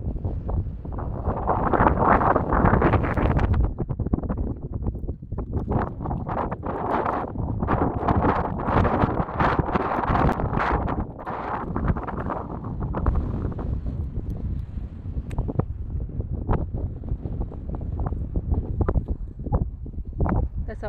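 Strong wind buffeting a phone's microphone in gusts, strongest early on and again around the middle, easing somewhat towards the end.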